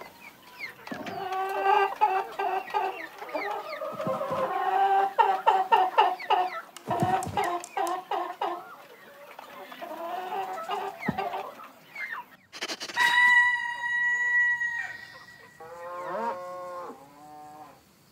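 Many hens clucking together in short, choppy calls. About thirteen seconds in comes one long, steady, high-pitched call, followed by a few lower calls.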